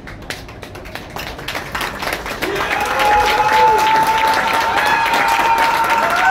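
Audience applauding, the clapping starting at once and swelling over the first three seconds, joined by cheering voices from about halfway in.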